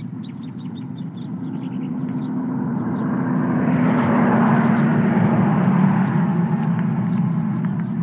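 A vehicle passing on the road over a steady low rumble, swelling to its loudest about halfway through and fading towards the end.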